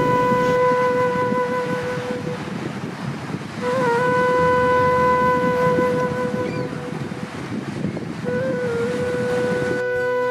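Background music: a flute-like wind instrument holds three long notes on the same pitch, each opening with a short bend, over a steady wash of ocean surf.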